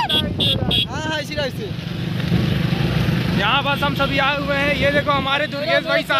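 Motorcycle engine and rushing wind noise during a ride on a dirt track. A voice sounds over it at the start and again from about three and a half seconds in.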